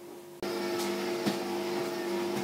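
A steady electrical-sounding hum of several held tones, which jumps sharply louder about half a second in, with a few light knocks over it.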